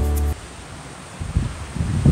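Acoustic guitar music cuts off a fraction of a second in, giving way to wind noise on the microphone, with low gusts buffeting it from about a second in.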